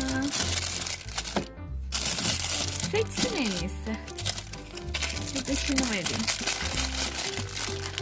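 Plastic ice-cream wrappers crinkling and rustling as a hand rummages through frozen packets in a freezer drawer, over background music with a steady beat.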